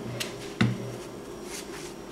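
A few sharp clicks and light knocks of hands handling a freshly opened Asus VivoBook X202E laptop. Near the end comes a soft rustle as the thin protective sheet is lifted off the keyboard.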